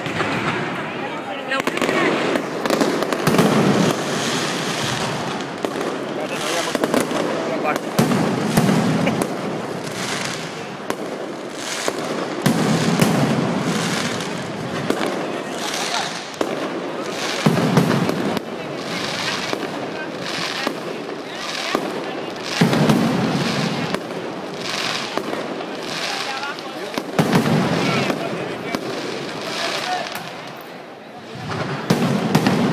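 Mascletà firecrackers: a continuous rapid barrage of loud, sharp bangs, with heavier, deeper blasts swelling about every four to five seconds.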